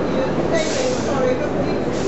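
Crowd chatter on a railway platform, with a short hiss about half a second in from the heritage train standing alongside.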